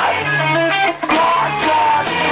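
A live band playing loud, with electric guitar and bass to the fore; the sound cuts out for an instant about halfway through, then comes back in with sharp hits.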